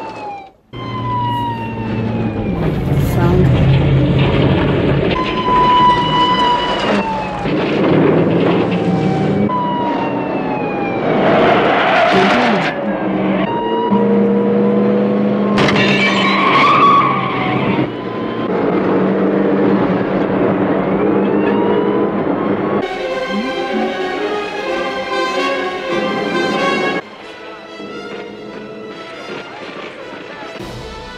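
Film soundtrack of a vehicle chase: engines running, a siren sliding up and down in pitch, and tyres skidding. Two louder rushes of noise come about twelve and sixteen seconds in, with background music playing underneath.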